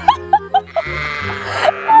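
Sheep bleating, with one long bleat about a second in, over background music with steady held low notes.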